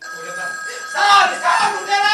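A wall-mounted telephone sounding a steady ringing tone, played as a stage sound effect. About halfway through, a loud voice joins it.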